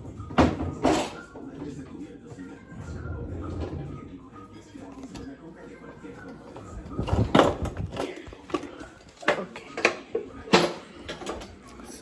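Kitchen handling noise: a few sharp knocks and clacks of utensils and objects on the counter, two about a second in and several more between about seven and eleven seconds in.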